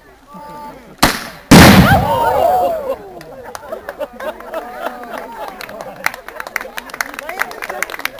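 A sharp bang about a second in, then half a second later a much louder explosion that dies away over about a second and a half: a Northover projector firing and its pyrotechnic target charge going off downrange.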